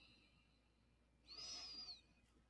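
Near silence, broken about a second and a half in by a faint, brief sound carrying a thin high tone that rises and falls.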